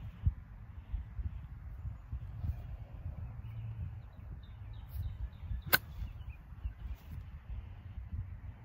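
A pitching wedge strikes a golf ball once, a single sharp click about six seconds in, on a half pitch shot from tall grass.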